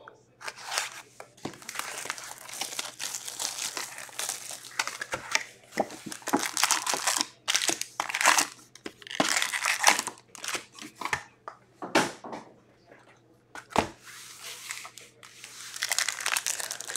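Plastic shrink wrap tearing off a hockey card hobby box and foil card packs crinkling as they are lifted out and handled, in irregular rustles and crackles with a short lull near the end.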